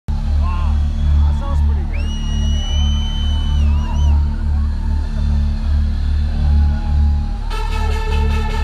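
Live concert music over a festival PA: a deep bass pulses slowly while the crowd shouts and someone whistles one long note, which wavers at its end. Near the end a bright, sustained synth chord comes in.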